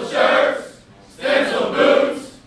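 A class of Army warrant officer candidates, men and women, singing their class song together in unison, two loud short phrases with a brief pause between.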